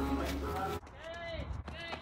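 A person's voice in two short pitched calls, about a second in and again near the end, after a sudden cut from steadier low background sound.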